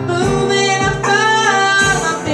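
Live worship music: singing over strummed guitar accompaniment, with a sung note held through the second half.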